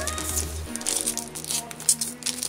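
Background music with held tones, under the crinkling and crackling of a foil trading-card wrapper being torn open by hand.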